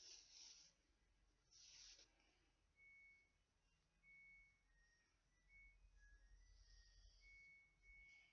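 Near silence, with two short soft rustles in the first two seconds, typical of yarn being drawn through crochet stitches while sewing on a piece. After that, faint short high whistle-like tones come on and off.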